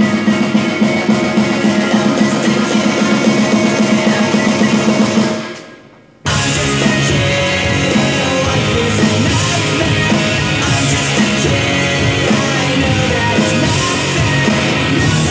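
Pop-punk rock backing track with guitar and vocals, an electronic drum kit played along with it. The music fades out about five seconds in and, after a brief gap, comes back in abruptly at full level.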